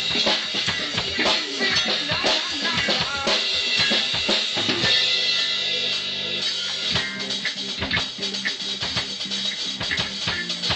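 A drum kit played in a fast punk-style beat: snare, bass drum and cymbals struck in a dense, driving rhythm over other pitched music.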